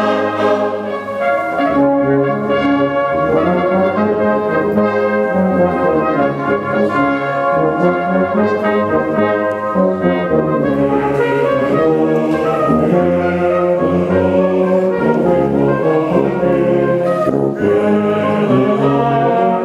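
A brass band of trumpets, euphoniums and tubas playing, holding full chords that change about once a second.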